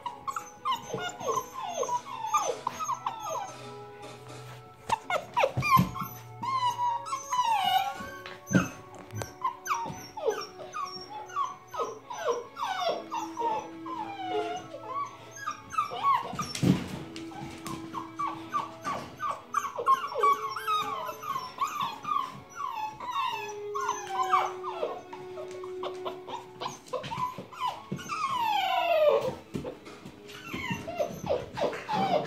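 A litter of puppies whining and yipping at once: many short, overlapping high whines that slide down in pitch. There is a single knock about seventeen seconds in.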